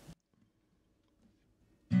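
Near silence, then an acoustic guitar comes in with a strummed chord right at the end, ringing on.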